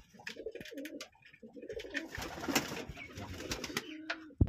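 Domestic pigeons cooing, a low wavering murmur, with a few light clicks and a brief rustle about halfway through.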